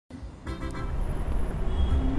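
City traffic noise: a steady low rumble of vehicles that fades in just after the start and swells about half a second in.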